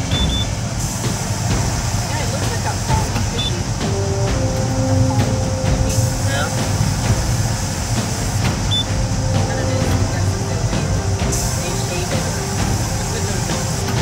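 Sawmill headrig band saw and log carriage running as a cottonwood log is sawn: a steady heavy machinery rumble. Over it, a high hiss comes in about a second in, drops out near six seconds and returns near eleven seconds.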